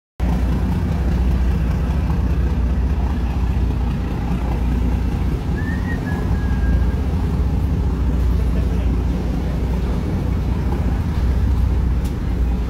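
A boat engine running with a steady low rumble, with a brief high tone that rises and then holds for about a second, about six seconds in.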